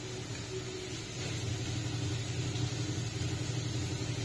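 A steady low hum, with water poured from a plastic jug into a steel mixer jar of ground mustard paste toward the end.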